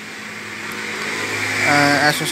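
A motor vehicle going by, its steady rushing noise and low hum growing gradually louder.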